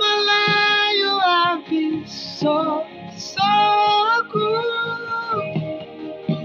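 A high solo voice singing long held notes without clear words, in three or four drawn-out phrases separated by short breaks, one note held with a slight waver near the start.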